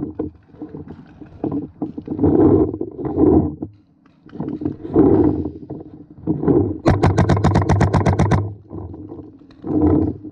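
Paintball marker firing a rapid string of about fifteen shots, roughly ten a second, lasting about a second and a half near the end. Irregular muffled bursts of noise come and go before it.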